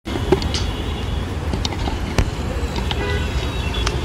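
City street ambience: a steady low traffic rumble with scattered clicks and two sharper knocks, one just after the start and one a little past two seconds in.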